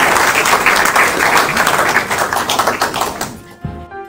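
An audience applauding, a dense patter of many hands clapping, which cuts off sharply near the end as music begins.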